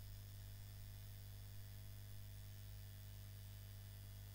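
Faint steady electrical mains hum with a light hiss, a low buzzing tone that does not change.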